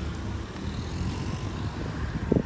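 Road traffic: a car running close by, a steady low rumble of engine and tyres.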